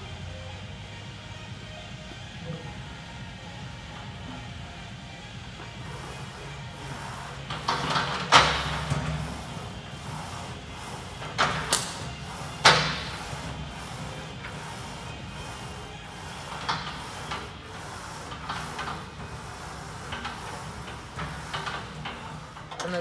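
A few sharp metal clanks, the loudest about eight seconds in and again around twelve seconds in, from a Smith machine bench-press bar being gripped and unhooked from its rack. Gym background music with a steady beat plays throughout.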